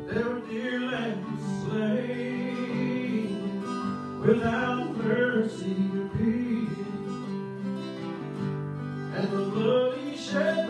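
A man singing a song into a microphone, accompanying himself on a strummed acoustic guitar; his voice comes in just after the start over the guitar chords.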